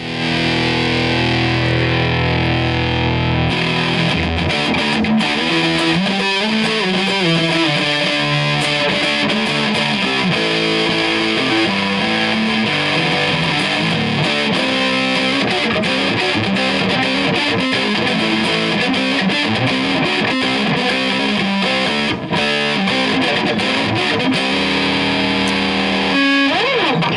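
G&L Fallout electric guitar with distortion from the amp, played on its neck P90 pickup. A chord is held and rings for about three seconds, then gives way to riffs and single-note lead lines.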